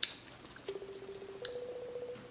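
Smartphone video-call tone: a click, then a steady low electronic note that steps up to a slightly higher note about halfway through, as an outgoing call rings.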